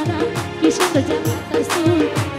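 Live band playing a Chittagonian regional folk song: a steady hand-drum beat whose low strokes drop in pitch, under a wavering melody line and bright percussion hits.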